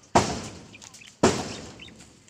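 Two sudden loud bursts of noise about a second apart, each fading away over about half a second.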